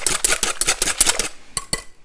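Wire whisk beating eggs in a glass bowl: quick, even clinking strokes about seven a second, which stop about a second in, followed by a couple of light knocks.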